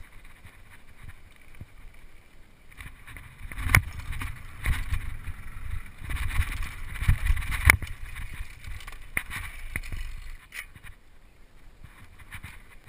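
Mountain bike riding down a rough dirt trail: rattling and sharp knocks from the bike over bumps, with a low rumble of wind and ground noise. It is loudest through the middle and dies down near the end as the bike comes to a stop.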